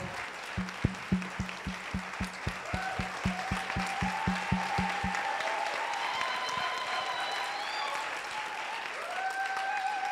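An audience applauding over music. A steady beat of about four strokes a second runs for the first five seconds, and long held high notes enter in the second half.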